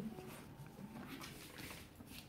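Faint pattering of a Manchester terrier puppy's paws and claws on a wooden floor as it scampers about.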